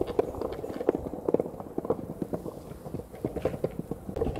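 Skateboard wheels rolling over brick paving: a low rumble with a quick, uneven clatter of clicks as the wheels run across the joints between the bricks.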